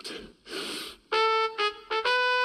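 A trumpet playing short separate notes, starting about a second in: a held note, a quick slightly lower one, then a higher note beginning at the very end. A short breathy hiss comes just before the first note.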